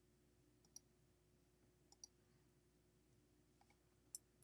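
Near silence over a faint steady hum, broken by faint computer mouse clicks: two quick pairs of clicks, the first under a second in and the second about two seconds in.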